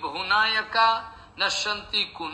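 Speech only: a person's voice talking in the lecture.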